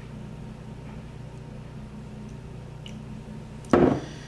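Steady low room hum, then near the end a single sharp thud as a glass beer bottle is set down on the table.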